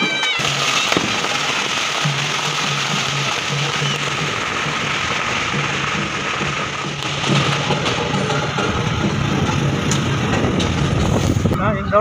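Music playing over a dense haze of outdoor noise, with a repeating low tone through the first half. From about seven seconds in, a deeper rumbling noise builds.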